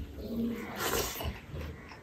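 Close-miked eating sounds: a handful of rice taken into the mouth by hand and chewed, with wet mouth and lip noises. The sound is loudest about a second in.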